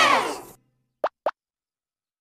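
Two short cartoon plop sound effects, about a quarter second apart, in silence just after a music cue fades out.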